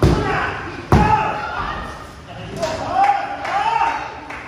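Two heavy thuds on a wrestling ring's canvas, one at the start and one about a second later, each with a short boom of the ring and hall. Near the end, raised voices shout.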